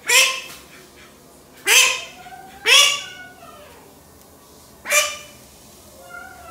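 A white call duck hen quacking loudly, four calls, the last after a longer pause.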